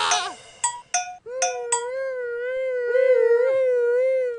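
A noise-rock track stops short, then a few brief high notes and a long, slowly wavering wail of about three seconds close out the recording.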